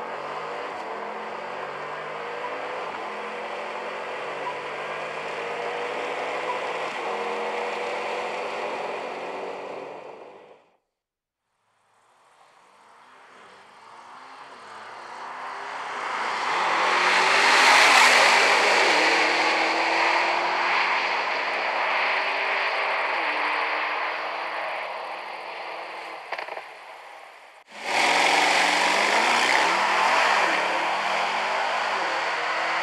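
A sports car's engine accelerating, heard in edited clips: a steady pull with slowly rising pitch for about ten seconds that cuts off abruptly, then after a moment of silence a car building up and passing, loudest about eighteen seconds in and fading away, before another clip cuts in near the end.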